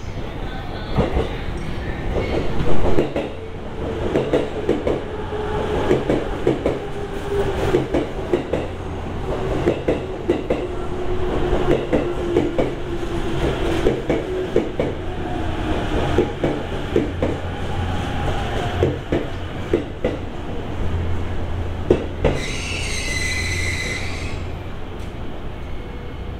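E257 series electric train pulling into the platform and braking to a stop: wheels clicking over rail joints and a slowly falling motor whine as it slows, then a high squeal near the end as it comes to a halt.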